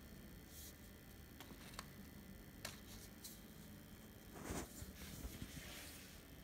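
Faint handling of a Kärcher pressure washer's plastic trigger gun and spray lance over the packaging: a few light clicks, and a louder rustling scrape about four and a half seconds in.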